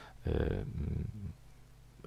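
A man's drawn-out hesitation sound, a steady low voiced filler held for about a second without forming words, followed by a short pause.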